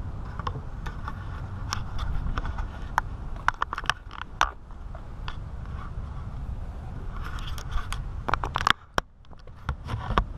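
Sharp metallic clicks and clinks of a steel exhaust-manifold stud and its two locked nuts being handled, in irregular clusters, over a low rumble.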